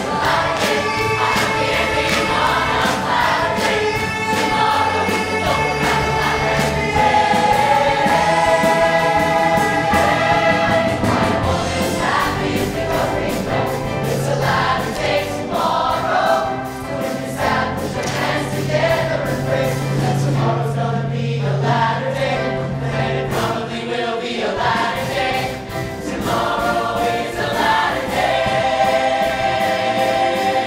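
A large musical theatre chorus of mixed voices singing in full ensemble, backed by a live orchestra with a steady beat.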